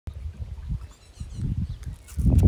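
Wind buffeting a phone microphone: an uneven low rumble that swells and drops.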